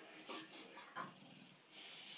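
Bulldog breathing hard, with a few short huffs in the first second, as it rolls and wriggles on its back.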